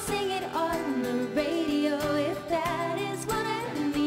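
Live acoustic pop song: a woman singing with acoustic guitar accompaniment.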